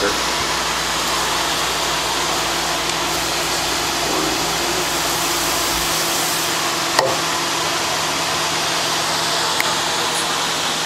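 Steady rushing noise of an open overclocking test bench's cooling fans running under a benchmark load, with a single sharp click about seven seconds in.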